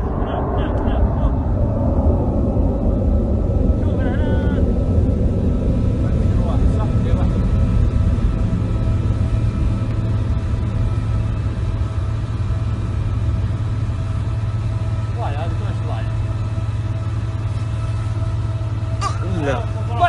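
Low rumble of Patriot interceptor missile launches, fuller over the first few seconds and then settling into a steady deep drone. Brief voices break in a few times, most near the end.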